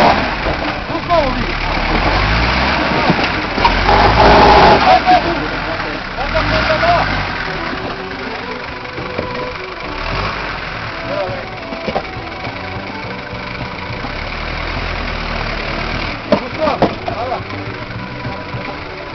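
Off-road 4x4 engine revving in repeated surges under load as it crawls over rocks, dropping back between pushes. Spectators shout over it, loudest about four seconds in and again near the end.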